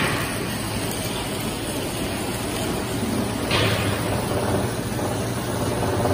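Automatic biscuit packing machine running: a steady mechanical clatter over a low hum, with a brief louder rattle at the start and another about three and a half seconds in.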